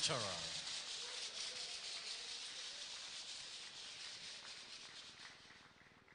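Audience applauding, the clapping fading steadily away.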